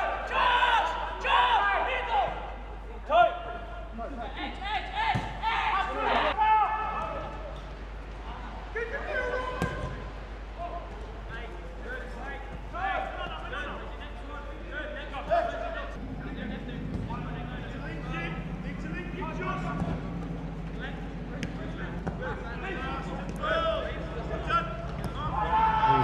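Pitch-side sound of a football match: men's voices calling and shouting on and off, with a few short thuds of the ball being kicked. A low steady hum comes in about halfway through.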